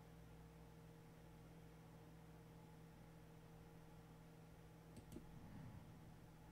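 Near silence with a faint steady hum, broken by two quick computer-mouse clicks about five seconds in.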